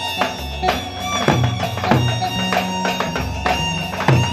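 Turkish davul drums beaten with sticks in a driving dance rhythm, over a steady, high held melody.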